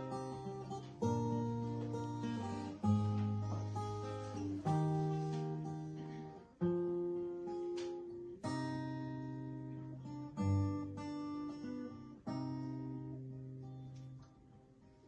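Acoustic guitar played alone as a slow introduction: chords strummed about every two seconds, each left to ring and fade before the next.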